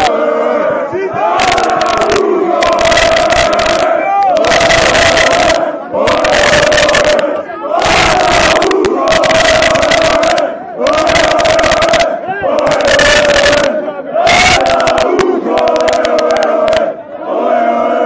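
A large, loud crowd of sports supporters chanting and shouting in unison, close to the microphone, in repeated short phrases of about one to two seconds each with brief gaps between.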